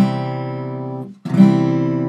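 Open C major chord strummed twice on an acoustic guitar, the second strum about a second and a half after the first. Each strum rings out for about a second.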